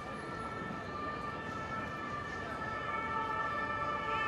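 Emergency-vehicle siren sounding steadily over city street traffic noise.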